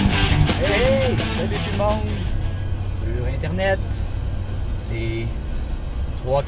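Rock guitar music fading out in the first couple of seconds, giving way to the steady low hum of a vehicle cabin while driving, with a few short vocal sounds.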